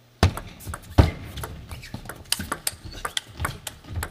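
Table tennis rally: the plastic ball clicking sharply and quickly off the rubber-faced rackets and the table, starting with the serve a moment in.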